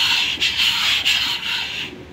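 Piston rings scraping against the aluminium cylinder bores of a Nissan MR20DE engine as the crankshaft is turned over, in about four strokes of roughly half a second each. The newly fitted rings press hard against the cylinder walls, so the engine turns stiffly.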